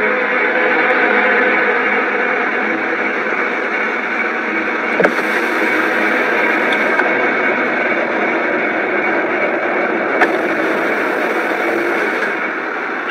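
Steady drone of a moving car heard from inside the cabin: engine and road noise, with two faint ticks, one midway and one near the end.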